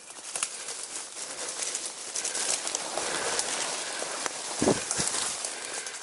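Footsteps on dry leaf litter with rustling and crackling from brushing through leafy undergrowth, and two heavier footfalls close together near the end.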